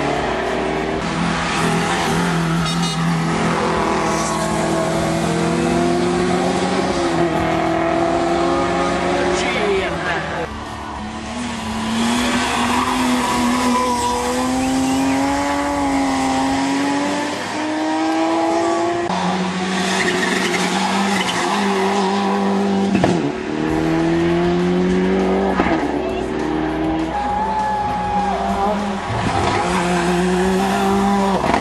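Rally cars' engines revved hard through a tight bend, one car after another, their pitch climbing and then dropping sharply at each gear change.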